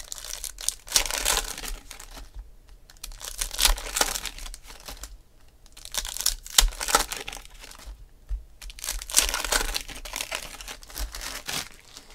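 Foil trading-card pack wrappers being torn open and crinkled by hand, in four bursts of crackling with short pauses between.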